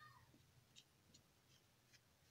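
Near silence: room tone, with a faint short squeak at the very start and a few faint, sparse ticks.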